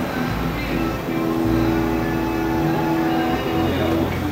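Rock band playing live through an outdoor PA in an instrumental stretch between sung lines: held chords over a bass line that changes note about once a second.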